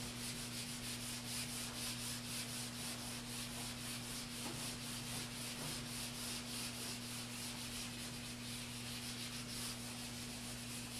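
Felt whiteboard eraser wiping a whiteboard clean in quick, even back-and-forth strokes, several a second.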